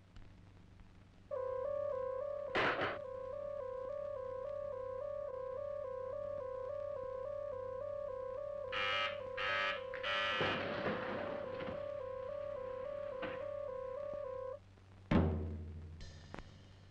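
An electronic two-tone alarm signal warbling steadily, switching rapidly back and forth between a lower and a higher pitch; it starts about a second in and cuts off near the end. A few short louder bursts break over it about two-thirds of the way through, and a deep thud comes just before the end.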